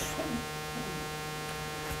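Steady electrical mains hum, with a thin buzz of several steady tones.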